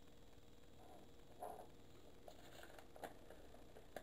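Near silence, with a few faint rustles and taps of a paper circle and plastic ruler being handled, about a second and a half in and again about three seconds in.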